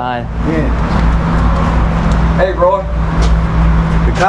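Steady low motor hum and rumble, with faint voices over it at the start and again around the middle.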